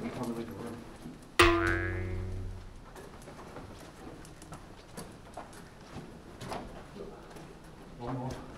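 A single bright musical note struck about a second and a half in, ringing out and fading over a second or so, followed by faint scattered ticks.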